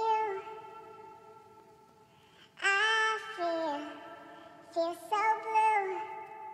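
A man's sung vocal line pitched up 12 semitones into a high, child-like chipmunk-soul voice. It sings held notes that slide between pitches in two short phrases, with reverb tails.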